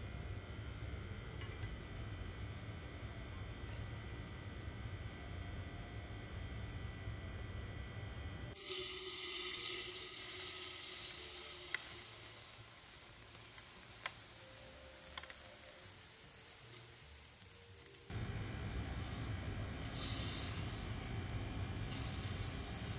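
Liquid nitrogen boiling off with a hiss as it is poured from a thermos onto a concrete floor and over a hand. A few sharp clicks fall in the middle, and a steady low rumble sits under the first and last parts.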